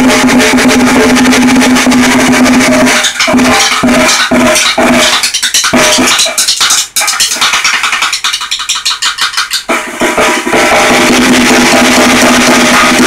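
Acoustic drum kit played loud and fast, with dense rapid strokes on the drums and cymbals throughout.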